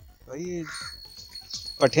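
A crow cawing once, a single short harsh call, followed by a man beginning to speak near the end.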